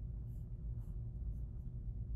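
A few short, faint scratchy rubs of a computer mouse being slid across a desk, over a low steady hum.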